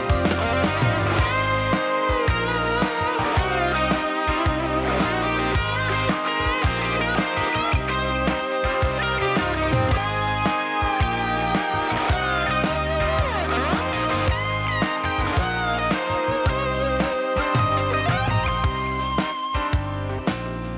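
Steel-string acoustic guitar playing an instrumental break in a song, with a steady strummed rhythm and a melody line over it, no singing.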